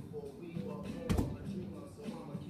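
A single thud about a second in, as a person's feet land a jump onto a padded plyometric box, over background music with vocals.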